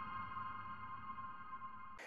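The last held chord of a channel intro jingle: a ringing electronic tone fading slowly away.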